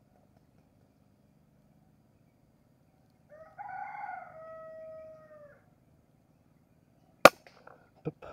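A rooster crows once, a call of about two seconds, in the middle. Near the end comes a single sharp crack, the shot of a Sharp Ace air rifle.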